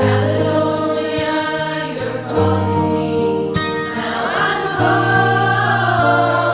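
A small group of women singing in harmony, holding long notes that move to a new chord every second or two. The phrase comes in suddenly at the very start.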